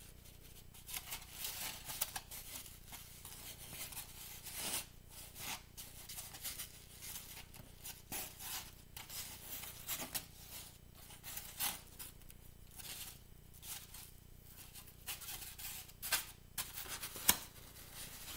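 Faint, scattered rubbing and light clicks of fingers working strips of biscuit dough into a braid on a plate, with one sharper click near the end.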